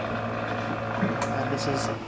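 Steady mechanical hum of an AmMag SA automated magnetic-bead processing instrument running as it dispenses wash buffer into 50 ml tubes.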